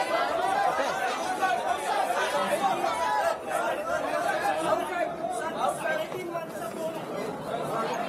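Overlapping chatter from a crowd of people, many voices talking at once with no single speaker.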